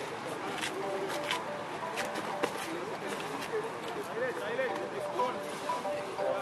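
Indistinct, distant voices of players and onlookers around the field, with a few scattered light clicks.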